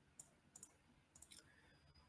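Computer mouse clicking: several short, sharp clicks in small groups, some in quick pairs.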